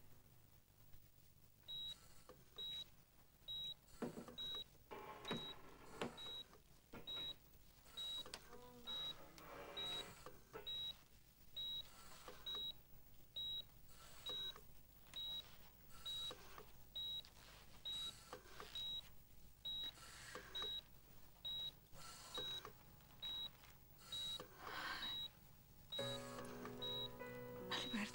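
Hospital patient monitor beeping steadily, a short high beep about every three-quarters of a second, starting about two seconds in. Quiet background music plays underneath and grows fuller near the end.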